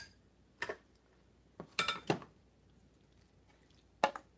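A serving spoon knocking and clinking against cookware: one knock just under a second in, then a quick cluster of several clinks around two seconds in.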